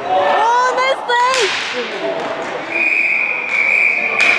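Players shouting and sticks clattering on the ball during a scramble in front of the net in an echoing gymnasium. Then, a little under three seconds in, a referee's whistle gives one long, steady, high blast, stopping play.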